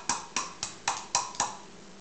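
An egg tapped again and again against the rim of a bowl to crack its shell: sharp taps about four a second that stop about a second and a half in.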